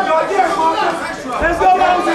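Several voices talking and calling out over one another: chatter from spectators around a boxing ring.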